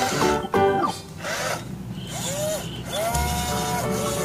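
Background music with a stepped melody, then short whines from a toy excavator's small electric motor, each rising in pitch, holding and falling, as the arm moves.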